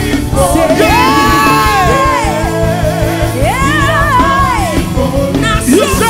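Live gospel worship music: singers over a backing band, with two long held sung notes, the first starting about a second in and the second about halfway through.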